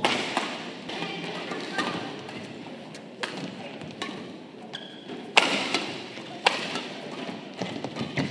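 Badminton rackets striking a shuttlecock back and forth in a rally, sharp hits at irregular intervals. The loudest come about five and a half and six and a half seconds in.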